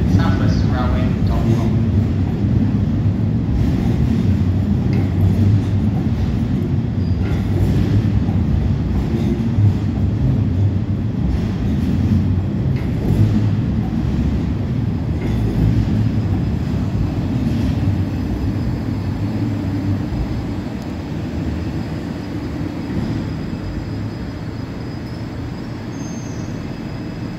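Two coupled Class 450 Desiro electric multiple units rolling slowly along the platform, a steady low rumble of wheels and running gear that gradually fades as the train slows on arrival. A faint high-pitched tone comes in near the end.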